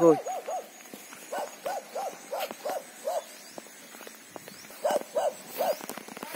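An animal calling outdoors: runs of short, arched hooting notes, about three a second, with pauses between the runs.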